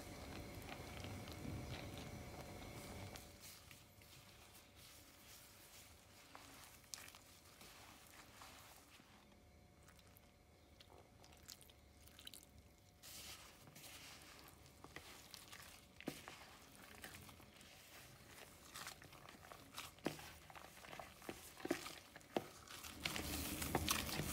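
Faint, soft squishing and small clicks of hands mixing and kneading glutinous rice flour with pandan juice into a dough in a basin. A faint steady hiss runs under the first three seconds.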